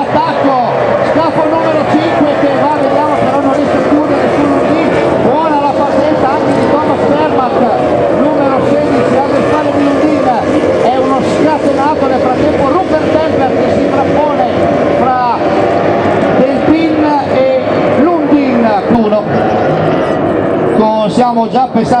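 Several Formula 2 racing powerboats' outboard engines running hard in a pack, their overlapping engine notes rising and falling against one another.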